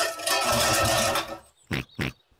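Tin cans clattering and rattling as a box of them is tipped into a recycling bin, a cartoon sound effect lasting just over a second.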